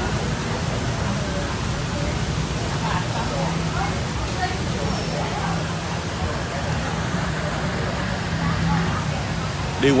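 Café background noise: a steady low rumble under faint, indistinct chatter of other customers.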